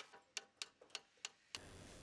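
Faint, sharp, evenly spaced taps, about four a second, stopping about one and a half seconds in, followed by a faint low hum.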